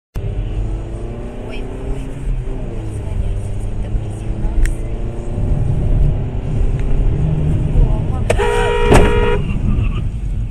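Steady engine and road rumble of a car driving in city traffic, heard from inside the cabin, with voices in the first few seconds. Near the end a car horn sounds one steady note for about a second, with a sharp click in the middle of it.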